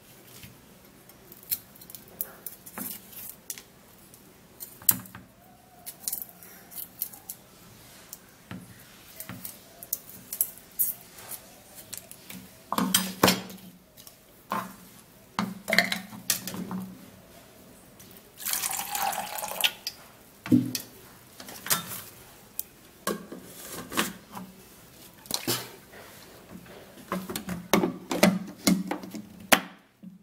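Garlic cloves being peeled by hand and dropped into a plastic blender cup: scattered small clicks, taps and rustles, with a short rush of water about two-thirds of the way through. A clunk near the end as the cup is set on the blender base.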